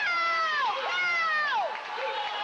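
Spectators in the stands yelling encouragement to a swimmer in long, held shouts. There are two drawn-out calls, each sliding down in pitch as it ends.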